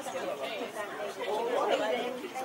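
Background chatter of several people talking at once, with no words standing out.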